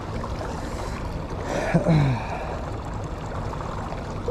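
Steady rushing of a small stream over a riffle. About halfway through, a man gives a short wordless vocal sound that falls in pitch.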